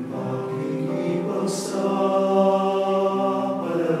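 Small mixed choir of men's and women's voices singing in harmony, holding long sustained notes, with a brief sibilant consonant about a second and a half in.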